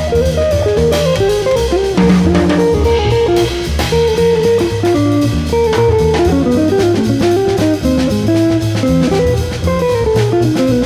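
Jazz trio playing: a hollow-body archtop electric guitar runs a quick single-note melodic line over an upright double bass and a drum kit keeping time on the cymbals.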